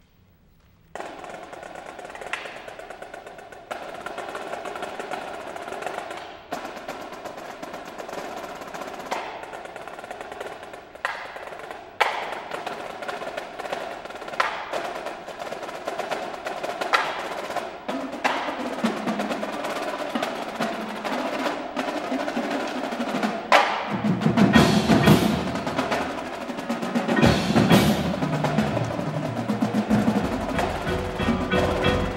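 A marching percussion battery of snare drums, tenor drums and bass drums plays a fast, intricate passage with sharp accents, starting about a second in. Over the last several seconds the sound grows fuller and lower as the front-ensemble marimbas and other mallet keyboards join the drums.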